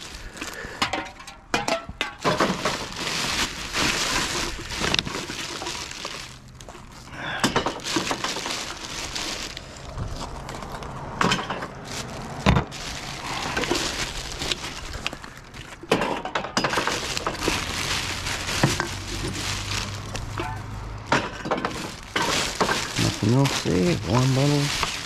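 Rummaging through a plastic garbage bag in a wheelie bin: the bag rustles and crinkles while glass bottles and aluminium drink cans clink and knock as they are picked out. A steady low hum runs underneath through the middle stretch.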